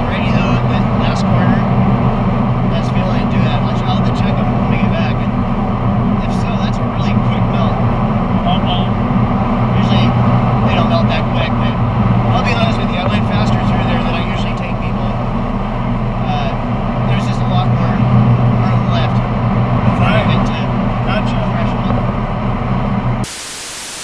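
Steady engine, road and wind drone inside an open-top Honda S2000 cruising on a highway, with talking over it. About 23 seconds in it cuts abruptly to a steady hiss of TV static.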